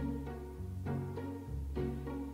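Background music: plucked notes, about one a second, over a steady bass line.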